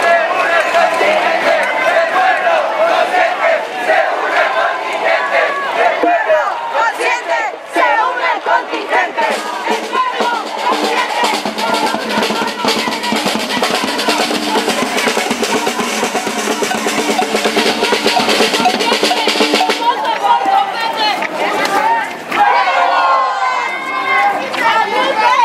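A marching crowd chanting and shouting, with drums beating in quick strokes through it.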